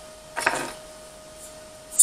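A brief clunk and scrape of metal being handled, a steel square against a steel-tube frame, about half a second in, over a faint steady hum.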